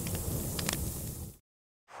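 Outdoor background noise with a low rumble and a few faint clicks, cut off abruptly about one and a half seconds in by an edit into dead silence.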